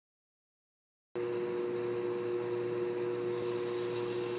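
Nothing, then about a second in a steady machine hum starts abruptly: two constant tones over an even hiss, like a running fan or idling engine.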